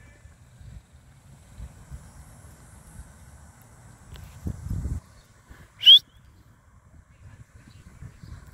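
Low rumble of wind on the microphone, louder briefly a little before five seconds in, and one short, sharp chirp rising in pitch near six seconds in.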